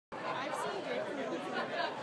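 Indistinct overlapping chatter of several people's voices in a large hall, with no words clear enough to make out.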